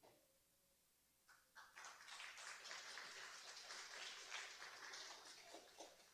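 Faint audience applause: a few scattered claps build into steady clapping about two seconds in, then die away near the end, welcoming a graduate as she receives her certificate.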